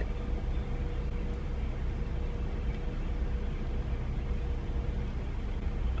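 Steady low rumble inside a stationary car's cabin, its engine idling, with a faint steady hum for the first few seconds.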